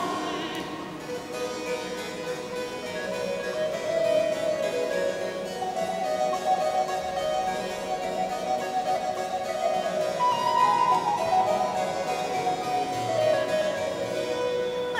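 Baroque chamber music with no voice: a harpsichord plays, and a higher melody line moves in long held notes above it.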